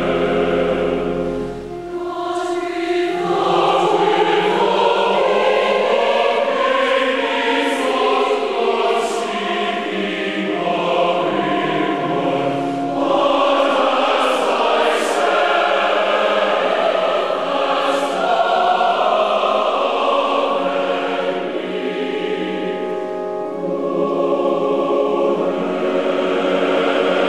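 A large choir singing with accompaniment. There is a short break in the sound about two seconds in and a softer passage near the end before it swells again.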